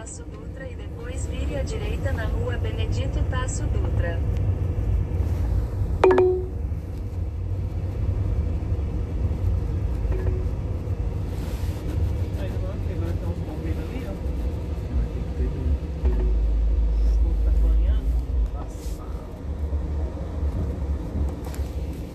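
Low steady rumble of a car's engine and road noise, with faint voices in the background. A short sharp tone comes about six seconds in, and the rumble gets heavier for a few seconds after the middle.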